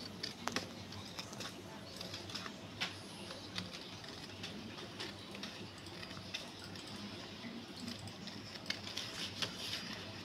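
Scissors snipping through a printed photo sheet: faint, irregularly spaced short clicks and cuts, with the sheet handled and turned between snips.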